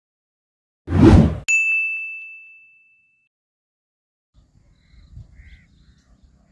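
Intro sound effect: a short whoosh about a second in, then a single bright, bell-like ding that rings out and fades over about two seconds.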